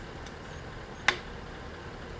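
A single sharp click about halfway through as a multimeter test probe is set against a resistor's terminal in the radio chassis, over faint room noise.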